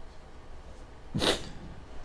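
A man's short, sharp intake of breath close to the microphone, a little over a second in, against quiet room noise.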